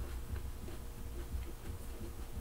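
Quiet room tone: a faint steady hum and low rumble, with a few soft ticks.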